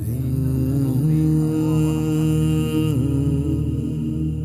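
Background vocal chant music: long held, droning notes with a brief dip in pitch about three seconds in.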